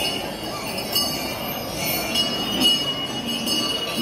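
Metal percussion clinking and ringing: a few struck strokes roughly a second apart, each leaving a high ringing tone, one held for over a second near the middle, over a crowd's background hubbub.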